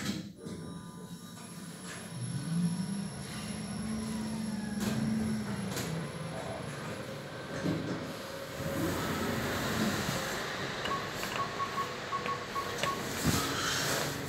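Kone EcoDisc gearless lift travelling down one floor: a low motor hum rises and then fades out over a few seconds as the car runs. Near the end comes a quick run of short high beeps and a knock.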